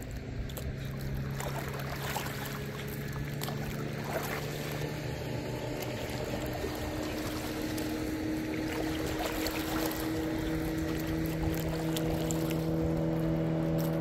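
A boat motor running steadily over water noise; its pitch steps up a little about ten seconds in.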